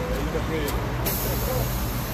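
Diesel city bus engine idling with a steady low rumble, voices of passers-by in the background. About a second in, a steady high hiss comes on suddenly and keeps going.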